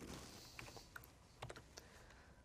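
A few faint computer keyboard clicks in near silence.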